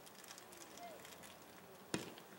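Faint open-field ambience with light crackles and a distant voice calling out briefly, then a single sharp thump just before the end.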